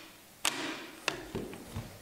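One sharp metallic click from the Beretta Model 1931 rifle's action being handled, followed by a few lighter clicks and a soft knock.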